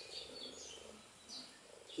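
Faint outdoor ambience with a few short, high bird chirps in the background.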